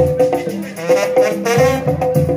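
Live banda (Mexican brass band) music with a steady beat, with a wavering high note held about a second in.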